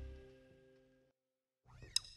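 The last held chord of a live pop-rock band dies away, fading to silence about a second in. Near the end a new piece starts with a short rising sound and a sharp click.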